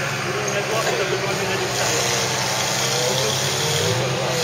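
Off-road trial vehicle's engine running steadily at low revs as it creeps nose-first down into a steep dirt gully, with spectators' voices over it.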